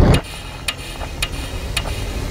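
Clock-like ticking sound effect from a trailer soundtrack: sharp ticks about two a second over a low rumble, just after a loud hit cuts off at the start.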